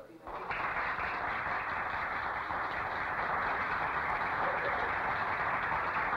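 Audience applauding: a steady, dense clapping that starts just after the opening and runs on evenly.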